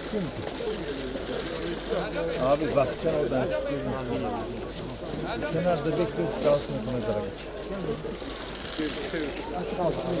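Crowd talking at once: many overlapping voices, none standing out clearly.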